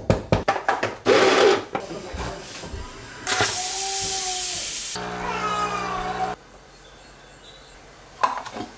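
Clicks and knocks as a Breville espresso machine is handled, then a loud hiss for about two seconds, followed by the machine's pump buzzing for just over a second before it cuts off abruptly.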